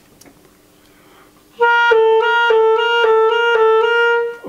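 German-system (Schwenk & Seggelke Model 2000) clarinet played to test its freshly adjusted pinky-key mechanism. It starts about one and a half seconds in with a loud sustained tone that moves back and forth between two neighbouring notes about three times a second.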